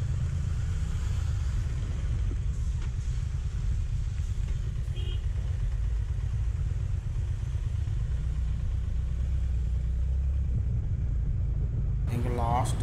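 Motorcycle riding along through traffic: a steady low rumble of wind and engine on the bike-mounted camera's microphone, with a short beep about five seconds in.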